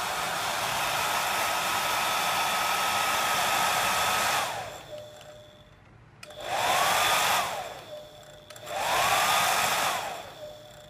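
Hand-held hair dryer running: a steady rush of air with a high motor whine. About four seconds in the whine drops in pitch and the sound dies away. It then spins back up twice, each time holding for about a second before winding down again.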